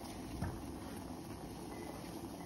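Water coming to a boil in a stainless steel pot, a steady hiss of bubbling, with one faint tap about half a second in.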